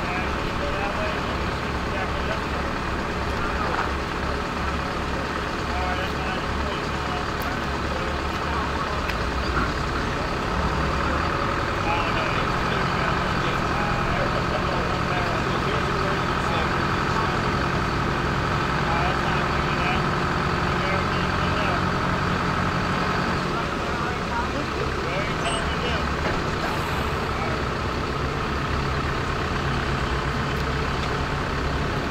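Engine of a truck-mounted lattice-boom crane running steadily. Its pitch steps up about ten seconds in and drops back lower about two-thirds of the way through as the crane is worked.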